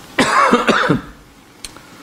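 A man coughs: a rough vocal burst of a few quick pulses lasting under a second, followed by a faint click.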